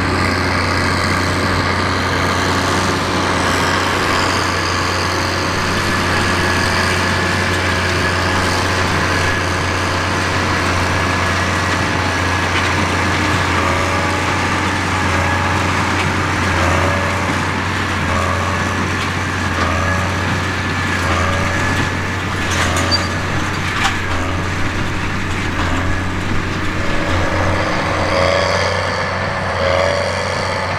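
Tractor engine running steadily under load while pulling a working New Holland big square baler. From about halfway through, a repeating beat about once a second joins the engine hum.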